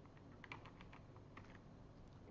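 Faint computer keyboard typing: a quick, irregular run of light key clicks.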